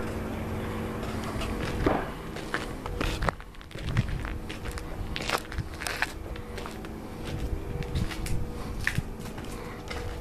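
Irregular footsteps crunching on dry dirt as the person holding the camera walks forward, over a steady low rumble and a faint hum.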